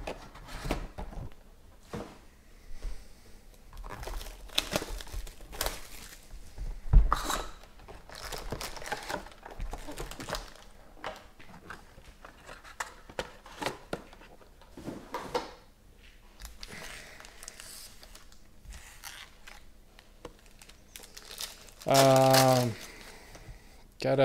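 Foil trading-card packs and a cardboard box being handled: irregular crinkling of foil wrappers, rustling and light knocks as packs are taken out and stacked, with one louder knock about seven seconds in. Near the end a short, steady pitched sound is the loudest thing heard.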